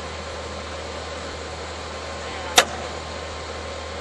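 An engine running steadily, most likely the machine lifting the concrete septic tank. A single sharp click or clank comes about two and a half seconds in.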